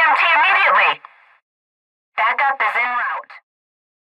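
Only speech: a voice in the first second, then a short spoken phrase about two seconds in.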